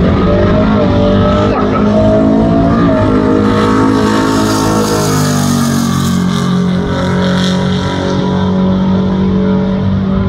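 Fox-body Ford Mustang drag car running hard down the drag strip. The engine note climbs, steps back at gear changes and climbs again, then holds high and steady near the end.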